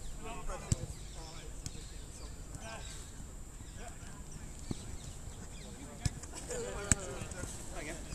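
Footballers shouting to each other across an outdoor pitch, with about four sharp thuds of a football being kicked, the loudest near the end.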